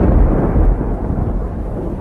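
Thunder rumbling with rain, a deep noisy rumble loudest in the first second and easing off after.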